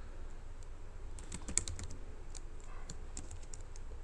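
Typing on a computer keyboard: a quick run of key clicks from about a second in until a little after three seconds, over a steady low hum.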